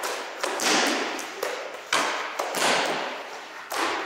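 Taekwondo kicks smacking hand-held paddle kick targets, about seven sharp slaps at uneven spacing, each with a short echo off the hall's walls.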